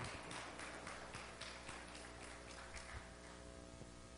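Congregation closing their Bibles: a faint run of quick page rustles and taps that dies away about three seconds in, over a steady low hum.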